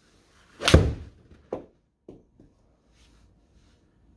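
A golf iron strikes a ball off a hitting mat, and the ball smacks into the simulator's impact screen: one loud hit just under a second in. A sharper knock follows about half a second later, then a couple of faint thuds as the ball drops. It is a poorly struck shot, a "pant shot".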